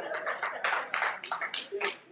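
Hand clapping from a few people in the congregation: a run of sharp, irregular claps, with laughter and voices under them at the start.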